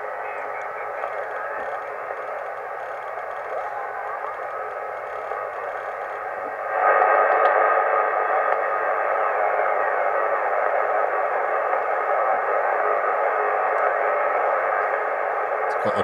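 Bitx40 40-metre SSB receiver's speaker giving out a steady hiss of band noise as it is tuned across the band in lower sideband. The hiss gets suddenly louder about seven seconds in.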